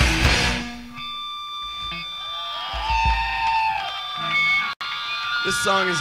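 A live punk-rock song ends with the full band of distorted guitars and drums cutting off within the first second. Between songs, steady high-pitched tones from the amplifiers hang on, and the singer starts talking into the microphone near the end.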